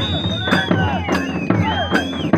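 Folk drums beating a steady rhythm of loud strokes about twice a second, with shrill whistles gliding up and down and a crowd shouting over it.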